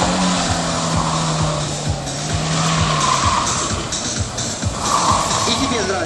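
VAZ 2113 hatchback driven hard through a cone slalom: engine held at high revs for the first few seconds and tyres squealing in a few short bursts as it turns. Background music with a steady beat plays under it.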